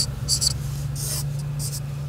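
Chisel-tip edding 500 permanent marker scratching across the smooth white body panel of a motorhome in about four quick pen strokes as a signature is written. A steady low hum runs underneath.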